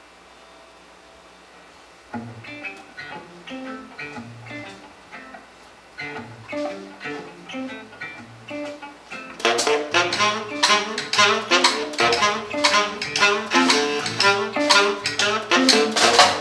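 A jazz quartet starting a tune live. After about two seconds of room tone, electric guitar and bass guitar begin a plucked figure. About halfway through, the drums and tenor saxophone come in and the band plays at full level.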